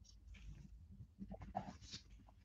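Near silence: faint call room tone with a low hum and a few soft, brief, indistinct sounds.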